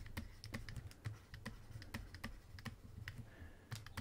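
Pen or stylus tapping and scratching on a tablet writing surface during handwriting: a faint run of light, irregular clicks, several a second, over a low steady hum.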